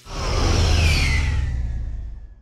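End-graphic sound effect: a whoosh with a deep rumble and a high whine gliding downward, swelling in over about half a second and starting to fade near the end.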